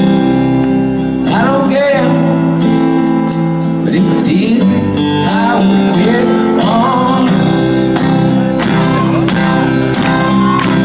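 Live folk-rock band playing: strummed acoustic guitar, electric guitar, drums and sung vocal lines, recorded from the crowd in a concert hall.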